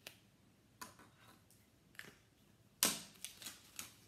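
A few faint clicks and taps from a marker and a ring binder being handled. About three seconds in comes a short, louder rustle of paper as a sheet is lifted and flipped over in the binder, followed by a few light taps.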